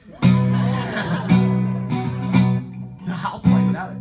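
Acoustic-electric guitar strummed in four loud chords about a second apart, played on with one of its six strings broken.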